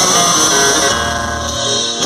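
A loud, steady hiss of a stage CO2 jet firing for about two seconds and stopping near the end, over live band music with guitar.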